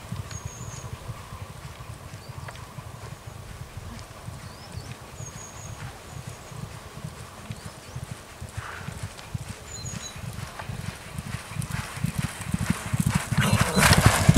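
Hoofbeats of two racehorses cantering on a soft all-weather gallop, a rapid run of dull thuds that grows louder near the end as the horses come close and pass.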